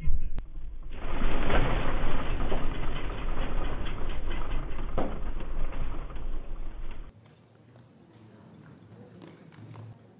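The magnitude 4.8 earthquake heard through a home security camera's microphone: a steady low rumble with rattling and clicks for about six seconds, then an abrupt cut to a quiet room.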